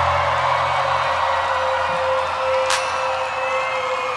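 A rock band's final held note ringing out live, its low bass note stopping about a second in while a higher tone runs on and fades, over a festival crowd cheering and whistling.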